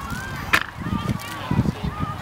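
Faint shouts from players across a grass field, broken by one sharp smack about half a second in.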